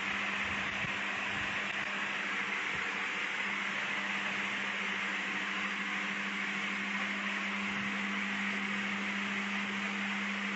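A steady low hum with an even, constant hiss behind it: unchanging room noise with no speech.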